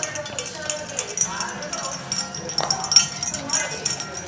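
Cocker spaniels eating from stainless steel bowls on a tile floor: rapid, irregular metallic clinks and scrapes as they lick and push the nearly empty bowls.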